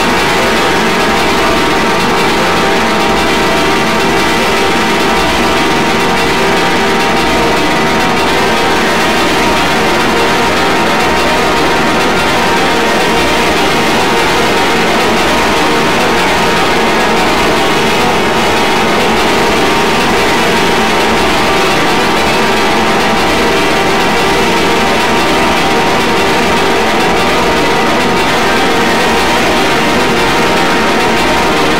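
Harsh noise music: a dense, loud, unbroken wall of distorted electronic noise with many held drone tones and a throbbing low rumble underneath.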